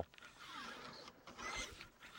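Faint scraping of a solvent-wetted bore brush on a cleaning rod being pushed slowly down a rifle barrel, swelling and fading with the stroke.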